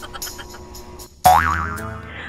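Background music with a drum beat stops about a second in. A cartoon "boing" sound effect follows, its pitch wobbling up and down.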